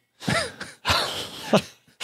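A man laughing briefly: a short breathy laugh after a single spoken word.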